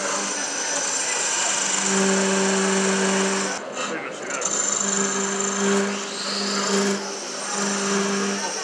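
Wood lathe turning a pale piece of wood while a hand-held gouge cuts it, a steady hiss of shavings coming off. A low hum joins in two stretches of heavier cutting, the first in the middle and the second after a short break.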